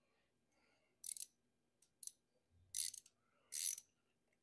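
Hand ratchet wrench clicking in four short bursts, about a second apart, as it is swung back and forth on a fitting.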